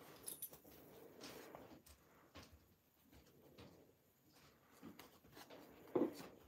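Faint, scattered rustling of satin lining fabric and small snips of a seam ripper cutting through stitches as a sleeve lining is unpicked.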